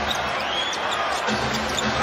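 Basketball being dribbled on an arena hardwood floor over a steady crowd din, with a brief high sneaker squeak about half a second in.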